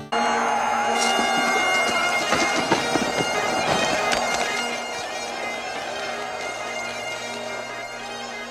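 Bagpipes playing a tune over a steady drone, starting abruptly and easing a little in level about halfway through.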